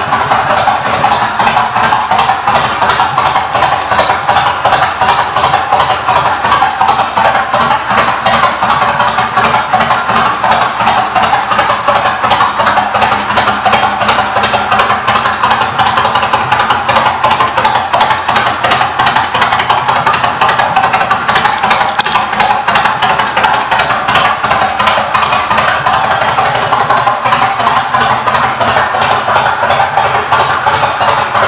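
Kawasaki Vulcan Mean Streak's V-twin engine idling steadily.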